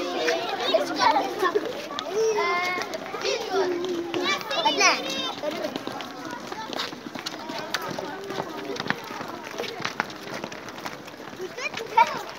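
A group of schoolchildren talking and calling out over one another as they walk, with high shouts in the first half, then quieter chatter with scattered light clicks.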